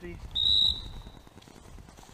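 A single short, steady, high-pitched blast on a dog whistle, starting about a third of a second in and fading out within about a second. It is blown to work the Brittany bird dogs.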